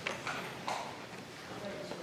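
Indistinct low talk in the room, with a few light knocks or taps in the first second.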